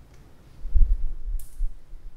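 Dull low thumps and rumble, loudest about a second in, with one sharp click partway through.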